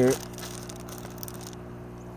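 Steady hum of the hydroponic system's running pump: a low buzz with several even overtones that does not change. A rustling hiss lies over it for the first second and a half.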